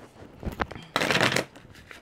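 A deck of oracle cards shuffled by hand: a few light clicks, then a dense riffling burst about a second in that lasts about half a second.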